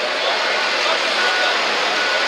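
Loud, steady rushing engine noise of a superstock pulling tractor, with a faint thin high whistle about a second in.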